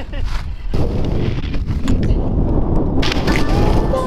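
A rumbling rush of wind on the camera microphone, starting about a second in, while skis slide over snow. Music with a held melody comes in near the end.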